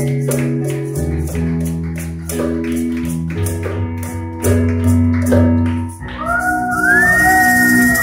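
Stage keyboard playing the closing chords of a slow ballad over a light, steady ticking beat. About six seconds in the music stops, and audience cheering follows: a long, rising whistle over clapping.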